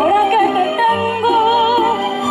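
A solo singer performing a mariachi-style song into a microphone, holding a note with wide vibrato near the middle, over an accompaniment with steady bass notes.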